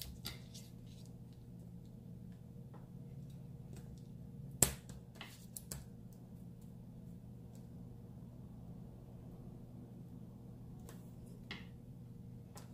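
Faint handling of washi tape and a plastic card on a wooden desk over a steady low background hum, with one sharp click about four and a half seconds in.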